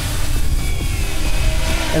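Multirotor quadcopter hovering overhead in GPS loiter mode, its electric motors and propellers giving a steady drone.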